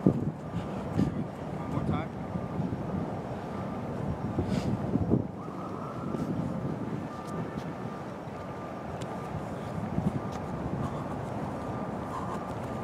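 A goalkeeper's quick footsteps on artificial turf, with a few short thuds from a football being played, over wind on the microphone and steady outdoor background noise.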